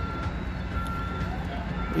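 A construction vehicle's reversing alarm beeping about once a second, one steady high tone, over a continuous low rumble of engines and traffic.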